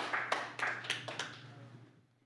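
Audience clapping in a scattered round of hand claps that thins out and dies away about a second and a half in.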